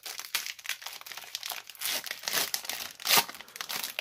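Foil wrapper of a Panini Mosaic basketball card pack crinkling and tearing in the hands, a run of sharp crackles with louder bursts about two and three seconds in.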